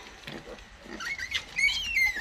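Newborn piglets squealing: a high-pitched, wavering squeal that starts about a second in and grows louder near the end.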